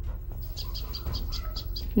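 A small bird chirping in quick, evenly spaced short notes, about six a second, over a steady low outdoor rumble.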